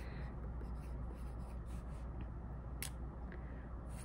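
A pencil writing on paper in a ring binder, a soft, steady scratching as the letters are formed, with one sharp tick about three seconds in.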